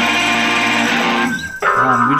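A live indie rock band with electric guitar, keyboard and drums holds a final chord that fades out about a second in. Near the end, a cut brings in voices.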